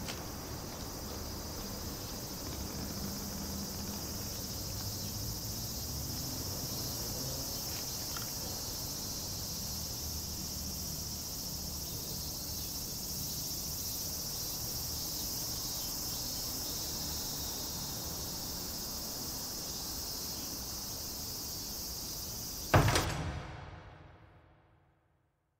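Steady high chirring of insects over a low background rumble. Near the end comes a single sharp click of a door latch as a brass doorknob is turned, and then the sound fades out.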